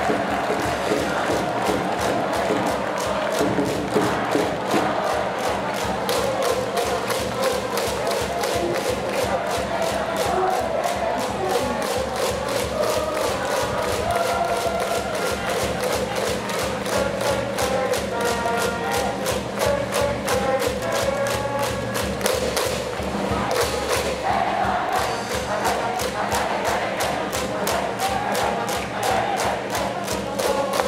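Cheering section in the stands at a high school baseball game: a drum beaten in a steady fast rhythm under a crowd chanting in unison, without a break.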